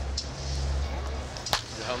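Faint voices over a steady low rumble, with one sharp crack about a second and a half in.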